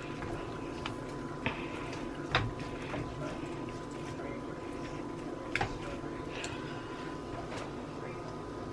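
Sliced onion and habanero pepper sizzling steadily in a nonstick frying pan over medium-high heat, stirred with a silicone spatula. A few sharp knocks of the spatula against the pan stand out, the loudest about two and a half seconds in and another near five and a half seconds.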